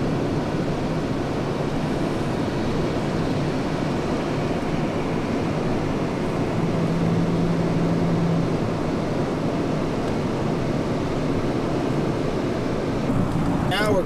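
Steady wind and road noise of a moving car, heard from inside the car, with a brief steady low hum about halfway through.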